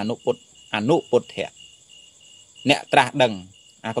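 A man preaching in Khmer in short phrases with pauses, over a steady high-pitched chirring of insects that pulses faintly in the gaps between his words.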